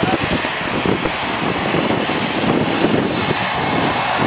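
Jet airliner engine noise, a steady rumble that holds at one level throughout.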